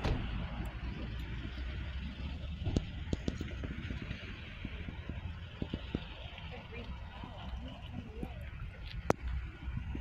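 A distant helicopter heard as a steady low rumble before it comes into view.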